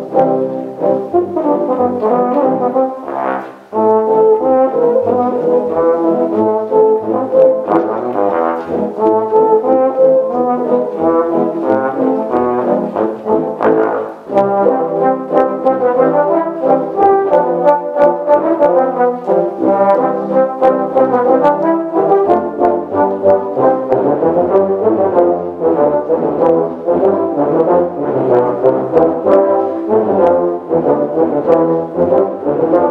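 Tuba-euphonium ensemble playing live, full low-brass chords with moving lines over the bass. The music drops away briefly about three and a half seconds in and again near fourteen seconds, then carries on.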